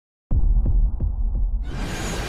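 Sound design of an animated intro: a deep bass hum that starts abruptly a moment in, with four soft pulses about three a second, widening into a fuller rising swell near the end.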